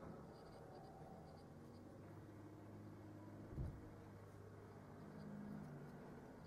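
Faint scratching of a thin metal tool crushing broken pressed eyeshadow back into powder in its soft metal pan, with one soft thump about three and a half seconds in.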